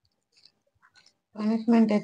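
Faint chewing and small mouth clicks from people eating rice and curry by hand. About a second and a half in, a woman starts talking loudly.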